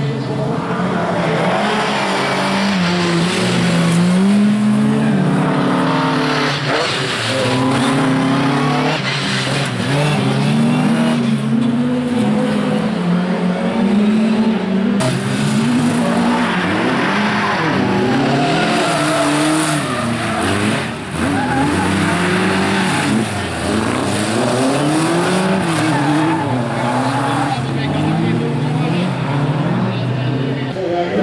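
Bilcross race cars' engines revving hard and dropping over and over as the cars slide one after another through a corner.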